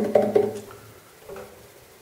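Acoustic guitar struck about four times in quick succession, its strings ringing briefly and fading out about a second in.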